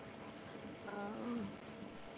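A person's short closed-mouth hum, about half a second long, rising a little in pitch at its end, over the steady hiss of a video-call line.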